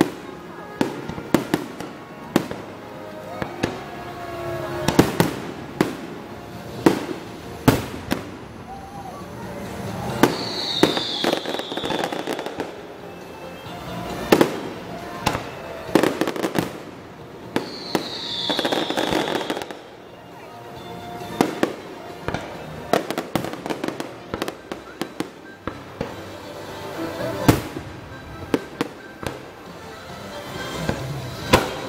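Aerial fireworks shells bursting in a continuous barrage: irregular sharp bangs, several a second at times, with crackling between them.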